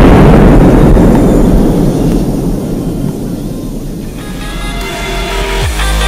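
The rumbling aftermath of a test explosive charge detonated under an armored SUV, dying away over about four seconds. Electronic music comes in near the end.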